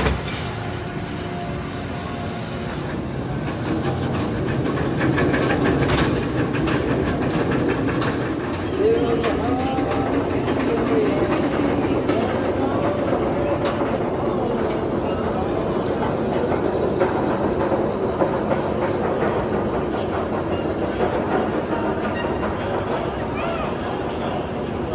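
Bolliger & Mabillard hypercoaster train climbing its chain lift hill, with a steady mechanical clatter that grows louder a few seconds in. People's voices sound over it.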